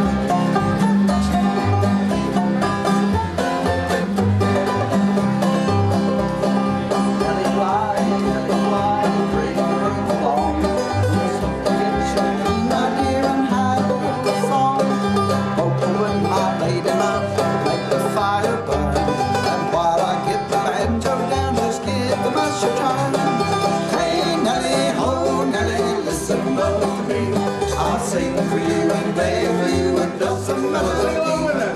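Nineteenth-century-style string band playing an instrumental tune, a banjo picking the melody over strummed guitar with a steady rhythmic pulse, with no singing.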